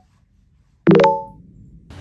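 One bright plucked musical chord, struck suddenly about a second in and fading within half a second, after near silence; it is one of a short run of plinking edit sound-effect notes.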